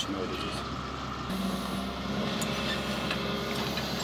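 Diesel engine of a working excavator running steadily, a low, even hum with a steady low tone that comes in about a second in.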